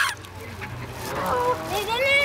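A mixed flock of Canada geese and white domestic geese honking: one loud honk right at the start, then a run of calls rising and falling in pitch from about halfway through.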